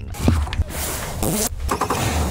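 Four-stroke outboard motor starting up and running, a low rumble under a hissing rush.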